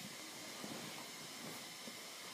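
Faint steady hiss of room tone, with no distinct sound events.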